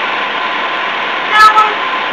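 Steady background hiss at an even level, with one short spoken "no" about a second and a half in.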